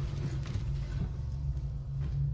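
A low, steady droning note of a horror film score, with a few faint clicks about half a second and a second in.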